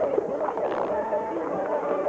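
Street-market crowd hubbub, many voices talking at once with no single speaker, over a background music track.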